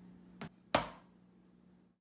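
Two knocks: a light one, then a loud bang about a third of a second later that rings out briefly.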